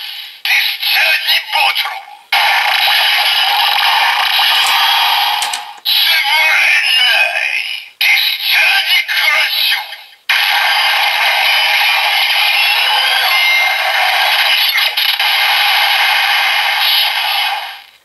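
Bandai DX Sclash Driver toy transformation belt playing its electronic sound effects through its small built-in speaker: a recorded voice call and standby music with no bass, in several stretches with short breaks, the longest running from about ten seconds in to near the end. The sounds are triggered by a Ninja full bottle, which the belt reads as a generic organic-type bottle.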